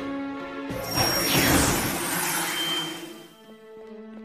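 Cartoon soundtrack music with held chords. About a second in, a sudden crash-like sound effect hits, its shimmer sweeping down in pitch, and the music fades near the end.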